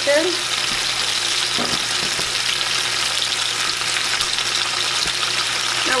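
Parboiled potato slices frying in hot bacon fat in a skillet on high heat: a steady sizzle.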